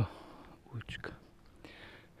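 A man's quiet, breathy murmuring under his breath: two brief low voiced sounds, at the start and about a second in, with whispered breaths between them.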